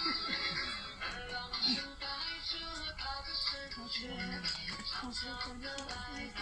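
A person singing a melody, moving in steps between held notes.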